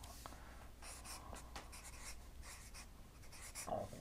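Marker writing on a paper flip-chart pad: a series of short, faint scratchy strokes as letters are drawn.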